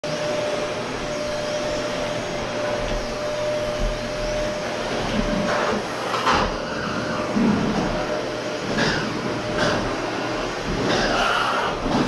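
Canister vacuum cleaner running steadily as its nozzle is worked over the floor. A thin steady whine sits in the noise for the first half, and a few brief louder surges come in the second half.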